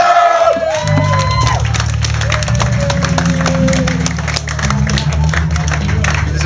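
A hardcore punk band playing live. A rising, sliding tone opens, then distorted guitar and bass hold a low, steady chord under dense drum and cymbal hits, with crowd shouting mixed in.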